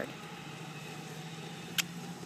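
Steady low hum of a motor running at a constant pitch, with one sharp click near the end.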